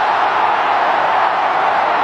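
Large stadium crowd cheering, a loud, steady wash of noise from tens of thousands of spectators after the batsmen complete three byes.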